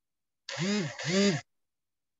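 A voice calling two drawn-out syllables, each rising and then falling in pitch, lasting about a second in all.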